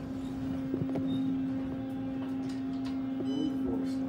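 Otis hydraulic elevator running, a steady low hum that sets in at the start, with a short high beep a little over three seconds in.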